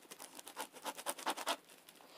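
Fingernails scratching and picking at the plastic shrink-wrap on a packaged collapsible storage container, trying to break it open: a quick run of scratches that stops about a second and a half in.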